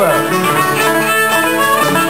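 Ceilidh band playing a dance tune on two fiddles, five-string banjo and acoustic guitars, with the fiddles carrying the melody over strummed chords.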